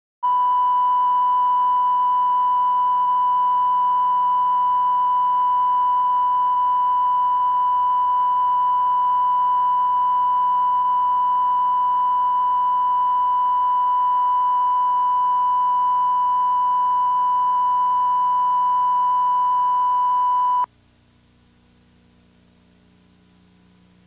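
Steady line-up test tone, a single pure beep recorded with colour bars at the head of a videotape. It cuts off abruptly near the end, leaving only faint tape hiss and hum.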